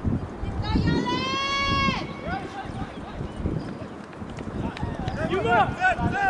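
Spectators shouting at a soccer game: one long, held call about a second in, then a cluster of short shouts from several voices near the end, over steady crowd and open-air noise.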